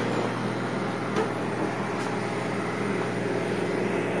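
Steady electrical hum with an even, fan-like hiss from running equipment beside the laser cutter, and one faint click about a second in.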